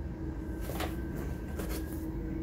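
Steady room hum with a held low tone, broken by a brief knock just under a second in and a couple of faint clicks near the end.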